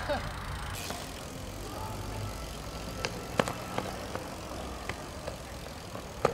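Outdoor background noise with a few sharp knocks and clicks from a BMX bike, about three seconds in and again near the end, after a brief voice at the start.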